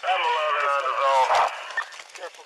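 A man's raised voice, one drawn-out call lasting about a second and a half, over a steady hiss.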